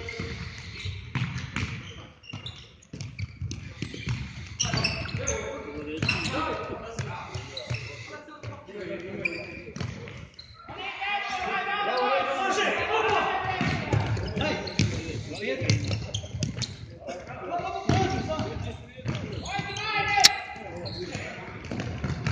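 Futsal ball being kicked and bouncing on a sports-hall floor, echoing in the large hall, with voices calling out. One sharp, loud kick about twenty seconds in.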